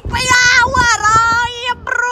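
A young woman's voice singing a long, high, drawn-out note that wavers slightly, then starting another note near the end.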